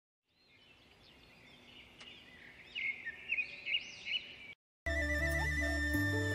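Birds chirping and whistling, fading in and growing louder, cut off suddenly after about four and a half seconds; after a short silence, background music with a flute melody begins near the end.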